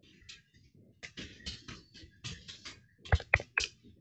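Computer keyboard being typed on in a quick run of keystrokes, with three louder clacks near the end.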